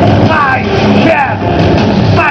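Loud live electro-industrial (EBM) band performance: dense electronic backing with short falling synth-like sweeps that recur about every half second to second.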